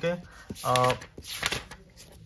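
A man's voice saying one short word, with faint rustling and a few light clicks around it.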